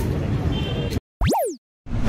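Logo-sting sound effect: a quick electronic swoop that shoots up in pitch and falls back, then a sudden noisy whoosh-hit near the end, after the field recording with voices cuts off abruptly.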